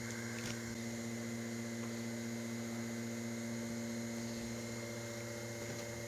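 A steady electrical hum with several evenly spaced tones, unchanging in level throughout.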